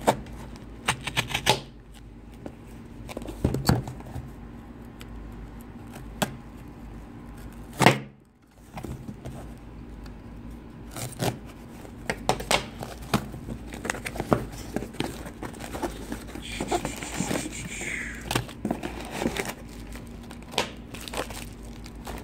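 A pocket knife slitting packing tape on a cardboard box, then the box being handled and opened: scattered scrapes, taps and cardboard rustle, with one sharp knock about eight seconds in. A stretch of crinkling packing material comes about three quarters of the way through.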